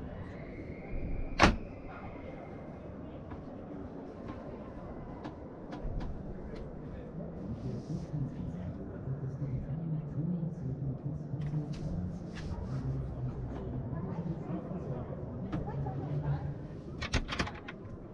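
Wooden cabinet and interior doors of a camper van being opened and shut. There is one sharp latch click about a second and a half in, scattered small knocks and clicks, and a quick cluster of clicks near the end, over a murmur of background voices.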